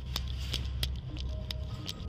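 Low, sombre background music: a steady deep drone with a few held notes. Scattered sharp clicks and knocks of gear and footsteps from the moving body camera sound over it.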